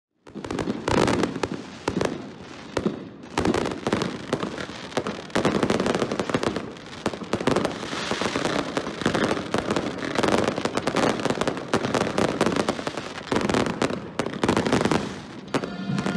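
Daytime fireworks going off in a rapid, dense run of bangs and crackles, with loud surges every second or two.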